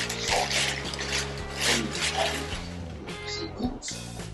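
Plastic shopping bag rustling and crinkling in several short bursts as a food container is pulled out of it, over steady background music.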